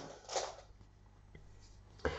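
A brief soft rustle of bulky yarn and knitted fabric being handled with a crochet hook about half a second in, then quiet room tone with one faint tick.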